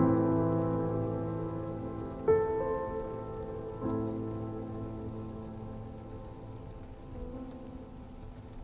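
Slow solo piano chords ringing out and slowly fading, with new chords struck about two seconds in and again near four seconds. A soft, steady patter of rain runs underneath.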